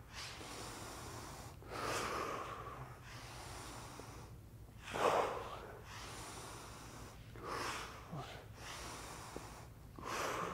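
A man breathing hard from exertion during a core exercise, with a sharp, forceful breath every two to three seconds; the loudest comes about halfway through.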